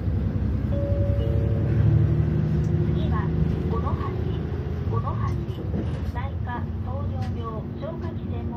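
Inside a moving city bus: the engine and road noise make a steady low rumble, loudest about two seconds in, with a steady whine over it in the first half. From about three seconds in, a voice speaks over the rumble.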